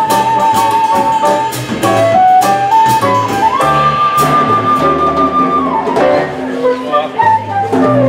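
Jazz quartet playing: a concert flute carries the melody over grand piano, bass and drums with cymbals. The flute holds a long note, slides up a step after about three seconds to a higher note held for about two seconds, then falls back down.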